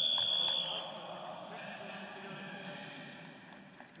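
Electronic buzzer sounding once, a high tone lasting under a second, signalling the end of a wrestling bout on technical superiority. A low murmur of arena noise follows.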